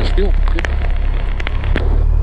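Cessna 172's four-cylinder piston engine running steadily in the cockpit, with raindrops ticking on the windscreen. Near the end the low engine note shifts and grows a little louder as power comes up for the takeoff roll.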